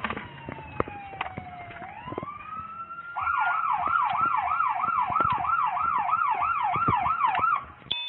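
Police car siren, heard from inside a car: a slow wail that falls and then rises again, switching about three seconds in to a fast yelp of about three sweeps a second, which stops just before the end.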